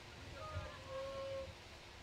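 Quiet background with a faint distant voice, one note held briefly near the middle.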